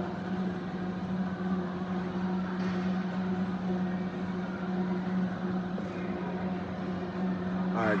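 Commercial countertop blender inside a clear sound enclosure, running steadily as it blends a strawberry protein shake with ice: a constant low motor hum.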